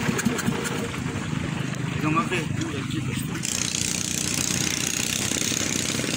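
Small gasoline longtail motor of a rabeta, a wooden river canoe, running steadily under way. A higher hiss joins about halfway through.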